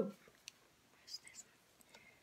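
Faint handling of playing cards as they are fanned through: a small click about half a second in, then a few soft, brief rustles.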